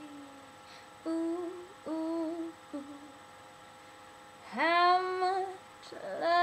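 A woman's voice, unaccompanied, humming a few short, soft notes, then a louder sung note that swoops up into pitch about four and a half seconds in. A faint steady electrical hum runs underneath.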